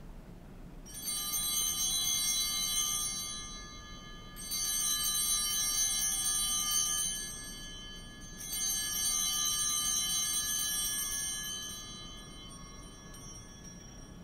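Altar bells rung three times at the elevation of the chalice after the consecration, each ring a cluster of high bell tones that dies away over about three seconds.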